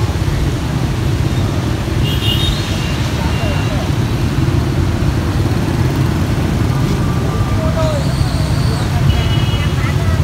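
Steady low rumble of street traffic, with faint distant voices now and then.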